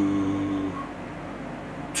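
A man's deep voice holding one long, level hesitation sound, a drawn-out "uhh" while thinking, which fades out under a second in; then low room tone.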